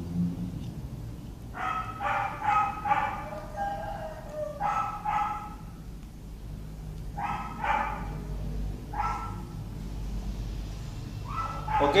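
A dog barking: short barks in small clusters, a run of about four, then pairs and a single bark spread a few seconds apart.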